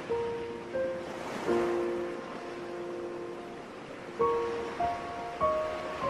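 Calm instrumental music, a slow melody of single held notes that start cleanly and fade, laid over the steady wash of ocean surf. A few notes come near the start, then a quicker run of them after about four seconds.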